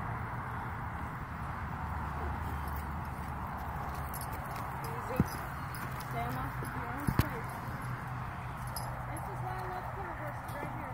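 Horse moving on loose dirt, hooves clopping, over a steady background noise, with sharp knocks about five seconds in and a quick double knock about two seconds later.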